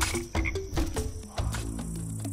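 Frogs croaking in a night-time ambience of an animated story, with a low held tone in the second half.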